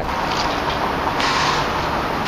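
Steady rushing noise of a running car, with a faint low hum under it.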